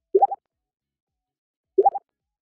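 Two identical short, quick upward-gliding 'plop' sound effects, about a second and a half apart, with silence between them.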